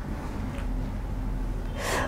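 A pause in speech filled with steady room noise and a low hum, then a short breath drawn in near the end, just before talking starts again.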